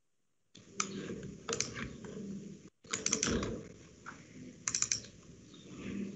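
Computer keyboard typing heard through a video-call microphone: about four short bursts of three or four quick key clicks, over a low hum and background noise. The sound cuts in abruptly after a moment of dead silence.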